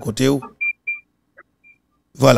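Short electronic beeps at one high pitch, two close together about half a second in and a fainter one near the end, from a phone line as a caller is being connected. A man says a couple of words at the start.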